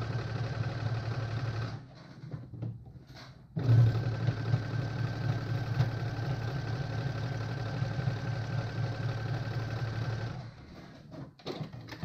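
Electric sewing machine sewing a triple stretch stitch, running steadily. It stops for about two seconds near the start, runs again, and stops shortly before the end.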